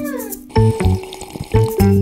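Bouncy children's background music with a steady beat. Near the start a whistle-like tone slides downward.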